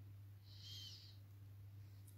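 Near silence: room tone with a steady low hum, and a faint short high-pitched chirp about half a second in.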